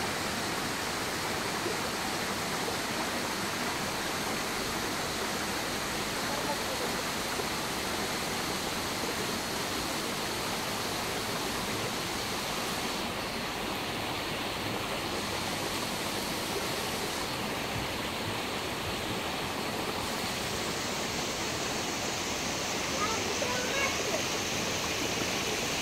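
Fast river water rushing over rocks through small rapids, a steady rush; its hiss thins briefly twice past the middle.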